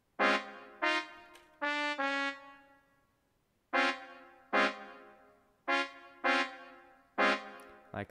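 Sampled trumpet playback from music notation software, sounding short notes one at a time as each note is clicked into the trumpet part. About nine notes at uneven intervals, each starting sharply and dying away, with one held a little longer about two seconds in.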